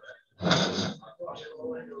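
Men's voices in a meeting room, with a loud, short, breathy burst close to the microphone about half a second in.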